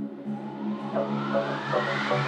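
Deep house music from a DJ mix: the high percussion drops out while the bass line holds, and a noise sweep rises steadily in pitch as a build-up, with short repeated synth notes coming in about halfway through.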